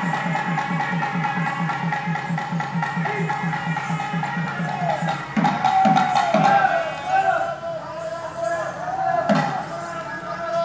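Gangireddu street band playing: a reed pipe holding a sustained melody that bends in pitch, over a fast, even drum beat of about five strokes a second. About halfway through the steady beat stops, leaving the pipe with a few heavier drum strokes.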